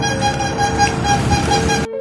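A street pandesal vendor's horn tooting rapidly over and over, cutting off abruptly near the end.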